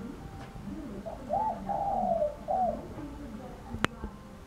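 A dove cooing in three low notes, the middle one longest. A single sharp click comes just before the end.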